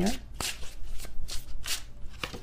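Tarot cards being shuffled by hand, a run of irregular quick flicks.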